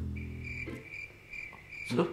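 Crickets chirping: a steady high-pitched trill with fainter chirps pulsing through it.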